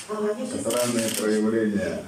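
Speech: a person talking in a conversation at close range, the words indistinct.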